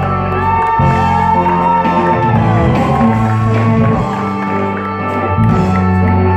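Live rock band playing: electric guitar, keyboards, bass and drum kit, with sustained bass notes and a long held melody line in the first half.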